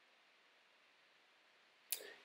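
Near silence: a pause in the narration, broken only by a short, sharp click near the end.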